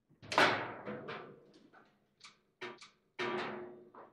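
Table football (foosball) table in play: a series of sharp, ringing knocks of the ball and rods against the table, the loudest about a third of a second in, during a rally that ends in a goal.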